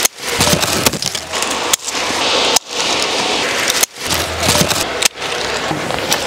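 Loquat branches and leaves rustling and crackling as bunches of fruit are cut from the tree and handled into a wicker basket, with occasional sharp clicks. The sound breaks off suddenly several times.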